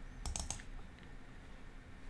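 A few quick, faint clicks of a computer mouse in the first half-second, over a low background hum.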